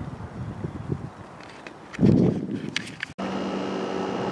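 Outdoor background noise with a brief rush of low noise about halfway through. A little before the end it cuts off suddenly, and a steady hum with a few held tones takes over.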